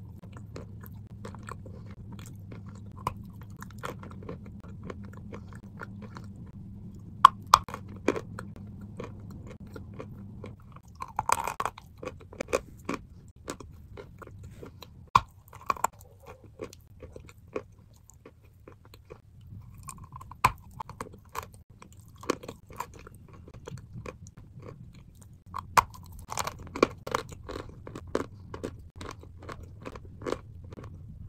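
Close-up crunching and chewing of a chunk of chalk coated in grey paste: irregular sharp crunches between quieter chewing, with denser runs of crunches about a third of the way in and again near the end. A low hum sits underneath for much of it.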